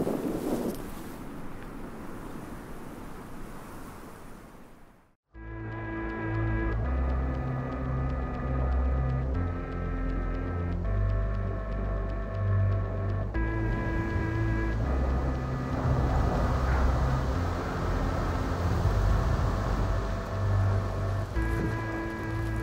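Wind noise on the microphone fades out over the first few seconds and cuts to a moment of silence. Background music then plays for the rest, with long held chords over a deep bass.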